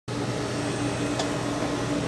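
Steady machine hum with a low steady tone, and a faint click about a second in.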